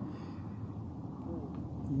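Quiet, steady low rumbling background noise with no distinct event.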